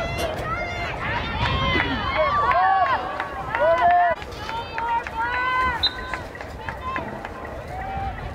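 Several voices shouting and calling out at once during a soccer game, short high calls overlapping one another. The shouting is busiest and loudest in the first four seconds, then thins out.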